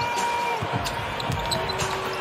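A basketball bouncing a few times on a hardwood court, over the steady murmur of an arena crowd.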